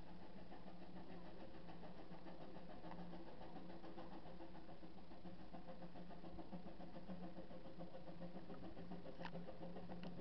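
Narrow-gauge steam locomotive coming slowly up the line: a steady low hum, with a single sharp click near the end.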